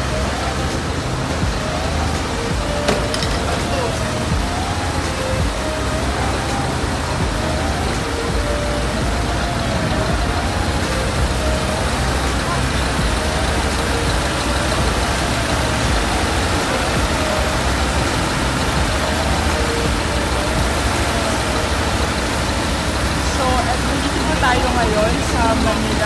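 A siren wailing, rising and falling in pitch about every two seconds, over a steady low rumble of engines.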